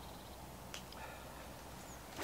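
Quiet outdoor background with a faint short click about three quarters of a second in and a faint high chirp near the end.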